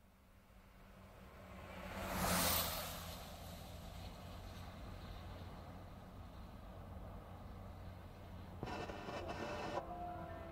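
Car running, fading in, with a steady low hum; the sound rises to a loud rush about two and a half seconds in, then settles. Near the end the car radio is switched on with a sudden burst of static.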